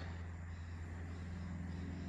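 Quiet background with a steady low hum and faint hiss; nothing starts or stops.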